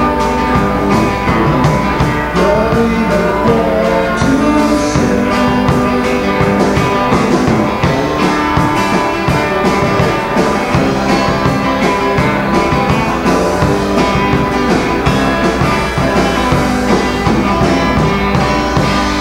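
Live rock band playing, electric guitar prominent over the rhythm section, loud and continuous.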